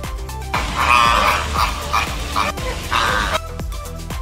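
Flock of flamingos calling, a run of several loud calls from about half a second in until near the end, over background music with a steady beat.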